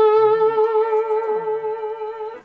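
Epiphone Casino electric guitar played with a slide: one sustained note on the B string with a gentle, subtle slide vibrato, slowly dying away.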